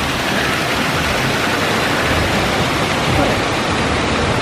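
Artificial waterfalls pouring over rockwork into a shallow pool: a steady rush of falling, splashing water.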